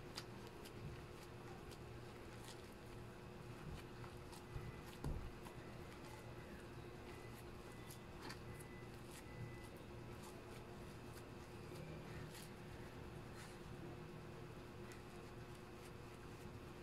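Hands squeezing and working sticky flour dough in a glass bowl: faint soft squishing with scattered light ticks, and a soft knock about five seconds in.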